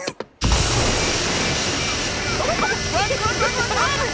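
A smoke machine blasting out fog with a loud, steady hiss that starts suddenly just after a couple of clicks. From about halfway, many quick squealing cries rise and fall over the hiss.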